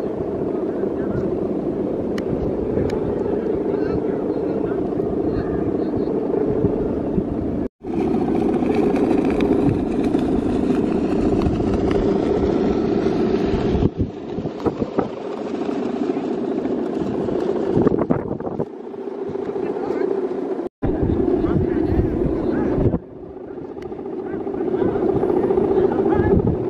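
Steady, engine-like droning hum of the guangan, the bow-and-ribbon hummers strung across the tops of big Balinese bebean kites flying overhead, with the voices of onlookers mixed in.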